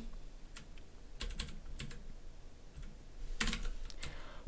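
Computer keyboard typing: scattered single keystrokes, then a quicker, louder run of keys near the end.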